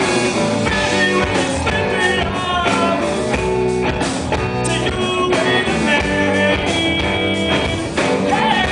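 Rock band playing live: electric guitar with drums, with notes gliding in pitch over a steady, dense backing.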